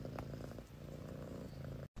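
House cat purring faintly, a low steady rumble.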